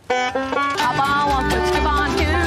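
Country-bluegrass string band music starts abruptly, with plucked banjo and acoustic guitar notes. A low bass joins in about a second in.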